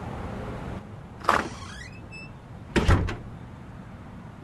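Door sound effects: a clunk with a short rising squeak about a second in, then a louder knock and rattle near three seconds.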